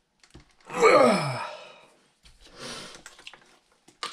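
A man sighs once, loudly, his voice falling steadily in pitch. A quieter hissing sound follows a little after two seconds in.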